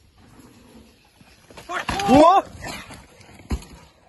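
A mountain bike crash on a dirt trail: a couple of thuds just before the two-second mark, right away followed by short yelping cries from a person, then a single knock later on.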